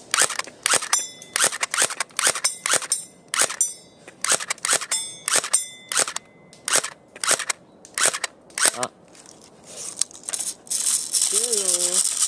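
Tokyo Marui Boys electric airsoft gun, an H&K MP5A5, firing quick single shots: about twenty sharp cracks, two or three a second, over the first nine seconds. Near the end there is a rustle of handling and a brief voice.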